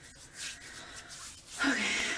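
Soft rubbing and rustling for about a second, then a woman says "okay".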